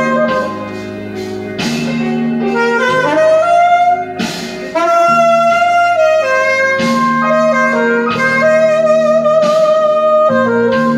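Mandalika alto saxophone playing a slow blues line in E-flat over a backing track. The line is made of long held notes, sliding up about three seconds in, with a wavering vibrato note near the end.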